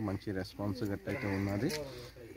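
A man speaking in Telugu close to a handheld microphone, with short pauses between phrases.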